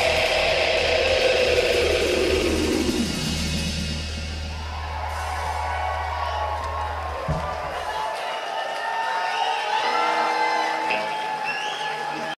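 Live rock band with electric guitar, bass and drums ringing out the song's last notes, one note sliding down. The low bass drone stops about eight seconds in, and the audience cheers and whoops.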